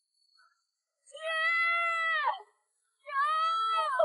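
A boy shouting “Niang!” (Mum) twice, each call long, drawn out and high-pitched, with the pitch dropping at the end.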